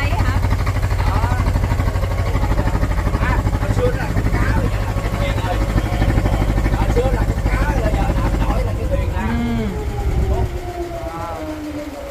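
Small wooden boat's engine running with a rapid, even beat, then easing off near the end with its pitch falling and the rumble dropping away as the boat slows near the pier. Faint voices are heard over it.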